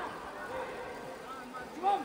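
Steady background noise of a large sports hall with faint distant voices, and a man's voice calling out briefly near the end.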